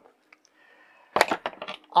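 Metal hand tools clinking against each other and a wooden table: a short run of sharp clicks just over a second in, after a moment of near silence.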